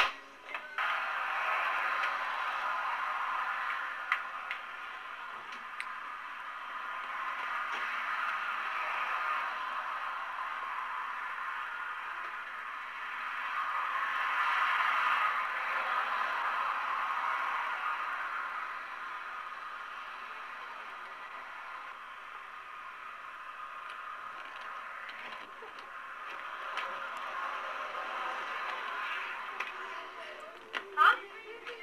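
Road traffic passing: a steady rushing noise that swells and fades several times as cars go by, loudest about halfway through.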